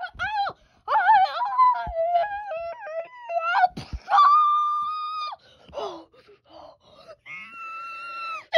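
A person's voice wailing and moaning without words, with a long high held cry about four seconds in and another starting near the end.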